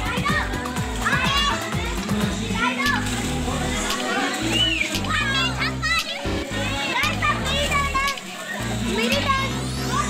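Children shouting and squealing as they play in a swimming pool, with some water splashing, over background music with a steady bass line.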